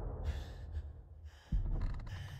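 A person breathing hard in short gasps, with a deep low boom hitting about one and a half seconds in and fading.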